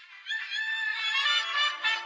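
Jazz music with brass horns playing, some notes bending in pitch as the band builds up.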